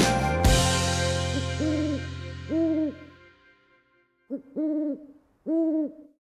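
Outro music's last chord and drum hit about half a second in ring out and fade away over about three seconds. Owl hoots come in as it fades: five hoots, each rising then falling in pitch, the first two faint and the last three louder and closer together near the end.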